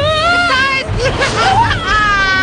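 Cartoon characters yelling and crying out, several short bending shouts followed near the end by a long held scream.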